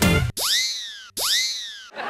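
Background music cuts off, and a cartoon comedy sound effect plays twice in a row. Each time the pitch shoots up quickly and then slides slowly back down, like a boing.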